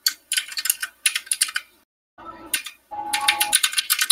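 Computer keyboard typing: quick bursts of keystroke clicks, with a short break about two seconds in.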